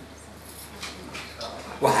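A pause in a man's speech in a room, with a low background and a few faint small sounds; his voice resumes near the end.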